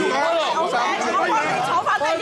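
Many voices talking over one another at close range in a packed crowd, with no single speaker standing out.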